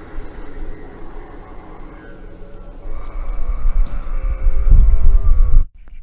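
Sound effect played from a 12-foot mummy Halloween animatronic's speaker: a low rumble under a held, droning tone. It swells louder over the last few seconds, then cuts off abruptly near the end.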